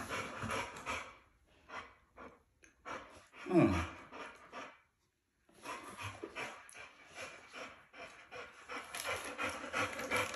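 Dogs panting close by in an uneven breathy rhythm. About three and a half seconds in there is one short vocal sound that falls steeply in pitch.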